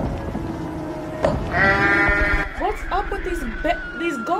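A goat-like bleating cry about one and a half seconds in, followed by quick wavering voice sounds, with music underneath.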